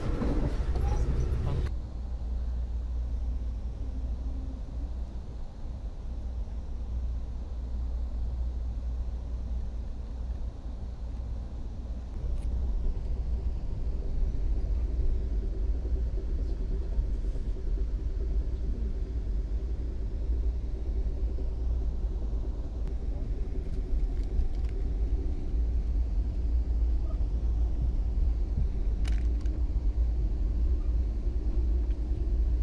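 Steady low rumble of a moving passenger train heard from inside the coach, with a louder rushing noise for the first second or two. A faint steady hum joins about halfway through.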